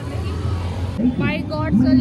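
A low, steady vehicle rumble, with voices coming in over it about a second in.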